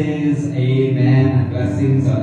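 A man's voice chanting into a microphone in long, low held phrases.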